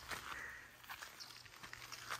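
Faint footsteps on dry dirt and grass, a few soft irregular steps.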